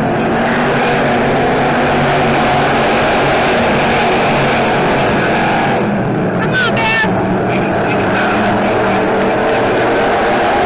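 A pack of dirt-track stock car engines running hard together as the cars race around the oval, a steady, loud, layered drone.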